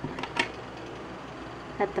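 Low steady background hum of a quiet room, with a couple of faint short clicks just after the start. A woman's voice comes back near the end.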